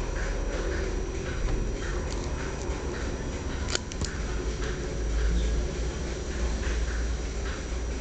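Crayon strokes scratching on construction paper, a short soft scratch about every half second, over a low rumble of handling noise close to the microphone. Two sharp clicks come about four seconds in.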